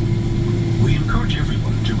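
Steady low cabin drone of a Boeing 777-300ER taxiing, its GE90-115B engines at idle, heard from inside the cabin: a constant deep hum with a held mid-pitched tone over it. Faint fragments of a voice come through around the middle.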